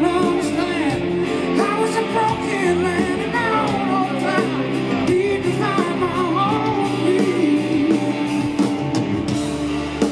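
Live rock band playing, with electric guitars, keyboards and drums, and a wavering lead melody that bends in pitch over the steady backing.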